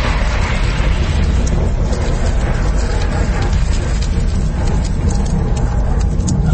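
Sound effect of a package going off in a fire: a loud, steady deep rumble with crackling throughout, with music mixed in.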